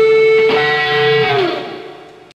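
Live band ending a song with electric guitar: a long held note, a strummed chord about half a second in, then a note sliding down in pitch as the sound fades out.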